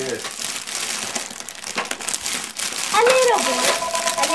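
Foil and paper gift wrap crinkling and rustling as a present is unwrapped by hand, with a voice coming in about three seconds in.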